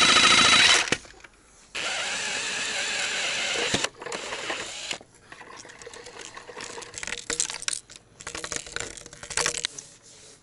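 Reciprocating saw cutting black polyethylene water pipe in two runs: one that stops about a second in and a second that runs for about two seconds. Then quieter scraping and clicks as the cut end of the pipe is worked by hand.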